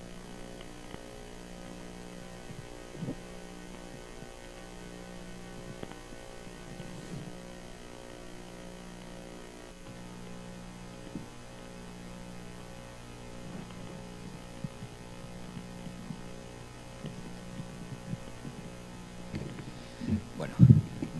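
Steady electrical mains hum from the hall's sound system, with one of its low tones pulsing on and off every couple of seconds, and a few faint knocks.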